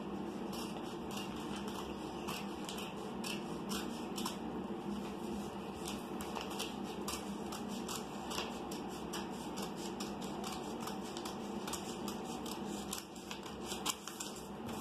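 Paper being cut with a pair of scissors: a long run of small, irregular snips and clicks as the blades close through the sheet.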